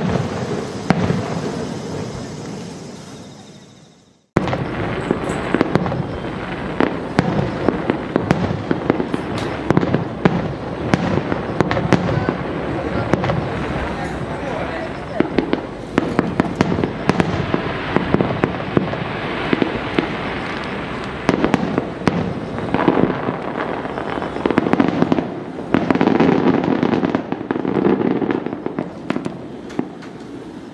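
Daytime fireworks going off overhead. A fading sound dies away over the first four seconds and cuts off abruptly. Then comes a dense, continuous crackling of many small pops from glittering star bursts, with sharper reports scattered through.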